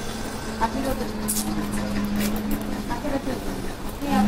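Indistinct voices of people in the room over a steady low hum, which fades out near the end.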